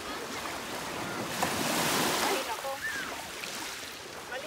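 Small Lake Michigan waves washing in over the shallows and shore, a steady wash that swells to its loudest in the middle.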